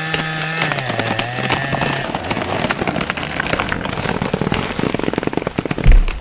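Chainsaw running at a tree's base, cutting off about two seconds in. The wood then cracks and splinters as the felled tree falls through the surrounding branches, ending in a heavy thud as it hits the ground near the end.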